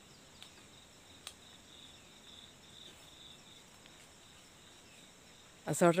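Faint insect chirring, a high thin pulsing trill, over quiet outdoor ambience, with two small clicks in the first second and a half.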